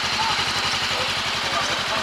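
Motorcycle engine idling steadily, an even low pulsing with no revving.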